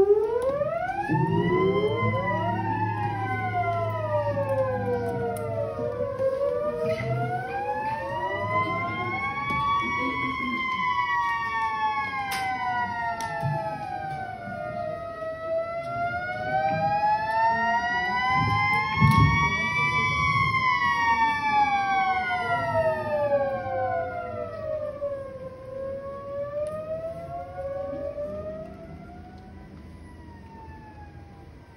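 Theremin playing slow, siren-like glides. Two overlapping sliding tones rise and fall about every nine seconds, with soft band accompaniment underneath, and fade near the end.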